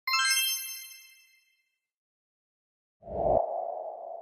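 Logo-intro sound effect: a bright, metallic chime strikes once and rings out, fading over about a second. After a silent gap, a low thump and a sustained, swelling hum start about three seconds in.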